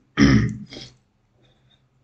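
A man clearing his throat: one loud rasp in two quick parts, lasting under a second, starting just after the beginning.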